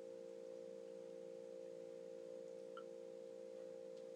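A faint, steady hum made of a few held tones, with no change in pitch or loudness.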